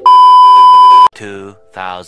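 TV colour-bars test-tone beep: one loud, steady high-pitched tone held for about a second, then cut off abruptly.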